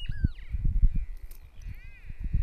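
Outdoor bird calls: short high chirps that rise and fall, once near the start and again near the end, over irregular low rumbling knocks.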